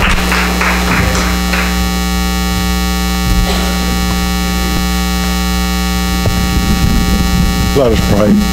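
Keyboard holding a sustained synth-pad chord at the close of a hymn over a steady low electrical hum, with a few sharp hits in the first second and a half. A man's voice comes in near the end.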